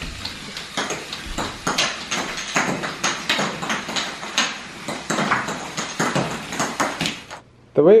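Motorized Lego catapult running and firing plastic baby-food caps about once a second. The caps clatter and bounce on a hardwood floor, and the Lego gears click, making a dense run of irregular sharp clicks that stops abruptly near the end.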